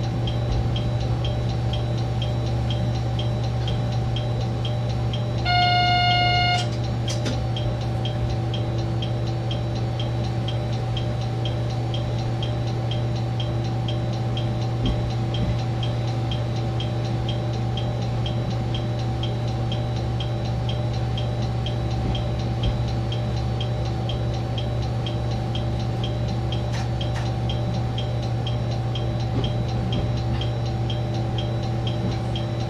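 KiHa 120 diesel railcar running along the line, heard from the cab: a steady low engine drone with a few constant tones over it and a fast, even ticking. About six seconds in, a louder high tone sounds for about a second.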